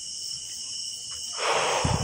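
Night insects, crickets, chirring steadily in a high, even chorus. About one and a half seconds in, a short rush of noise ends in a low thump.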